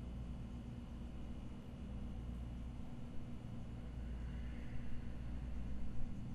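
Quiet room tone: a steady low hum with faint hiss, and no distinct events.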